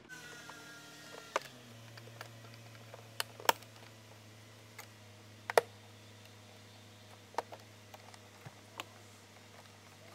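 Plastic retaining clips on the front bezel of an R129 SL instrument cluster clicking as they are worked loose, about half a dozen sharp clicks spread a second or two apart over a low steady hum.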